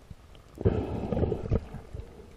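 Muffled underwater rushing and rumbling of water against the camera housing as the diver moves, in a surge starting about half a second in and lasting about a second.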